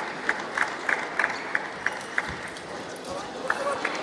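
Spectators in a sports hall between points: a steady crowd murmur with sharp claps, about four a second, that thin out and stop after the first couple of seconds.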